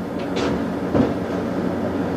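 Slide projector running steadily, with a short burst about half a second in and a sharp click about a second in as the slide changes.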